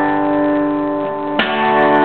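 Acoustic guitar chord ringing out. About a second and a half in, one more strum starts a fresh chord that is left to ring, closing out the song.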